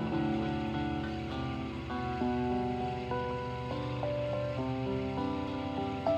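Acoustic guitar and electronic keyboard playing a slow, watery instrumental, with held notes that shift from chord to chord.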